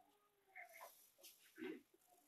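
Near silence: the room tone of a hall, with a few faint, brief pitched sounds about halfway through and near the end.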